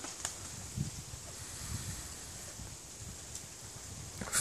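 Faint outdoor background: a soft, steady hiss of wind and rustling, with a few low bumps and one click about a quarter second in.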